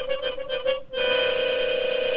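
Solo harmonica holding a single note with a wavering tremble. The sound breaks off briefly a little before a second in, then the harmonica sounds one long, steady note.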